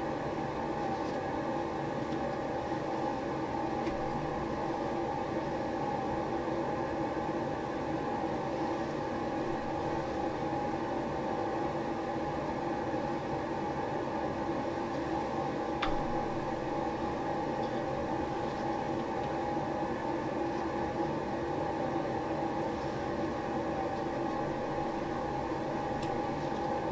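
Steady mechanical hum and hiss of room background noise, unchanging throughout, with one faint click about sixteen seconds in.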